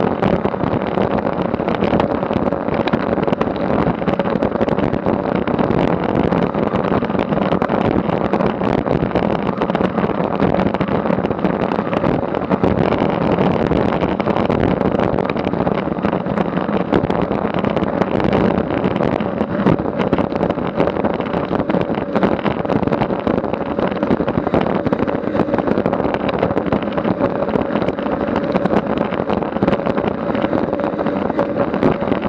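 Wind rushing over a Garmin VIRB action camera's microphone at about 25 mph, mixed with road-bike tyres rolling on asphalt, riding in a pack of cyclists. A loud, steady rushing noise with an even hum running through it.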